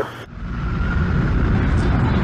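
After a sudden cut and a brief hush, a loud low rumbling noise swells over about a second and then holds steady.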